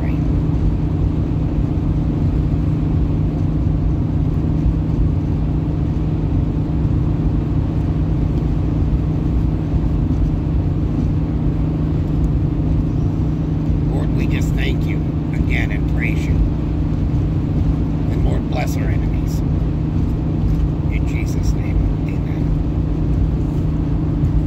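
Steady low road and engine rumble inside a moving car's cabin, with a few brief faint higher sounds about fourteen to sixteen seconds in and again around nineteen seconds in.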